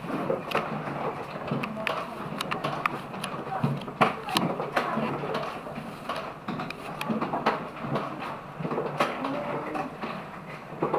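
Alpine coaster sled running along its steel track through a tunnel, with irregular clicks and clattering knocks from the wheels on the rails; voices are heard as well.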